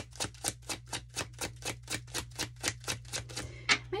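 A deck of tarot cards being shuffled in the hands: a steady patter of about four card strokes a second, with a sharper snap near the end.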